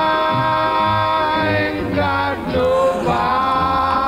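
A man singing in an old jazz vocal recording with its dull, narrow top end: he holds one long note for about two seconds, moves through a few shorter notes, then settles on another held note.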